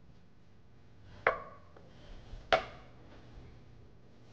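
Kitchen knife cutting through a lime and striking the cutting board twice, a little over a second apart, each a sharp knock with a brief ring.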